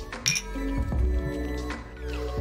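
Two drinking glasses clinked together once in a toast, a short bright ring about a quarter second in, over background music.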